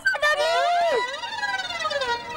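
A comic sound effect with a siren-like tone: several pitched notes bend up briefly, then slide down together in one long falling glide lasting about a second and a half.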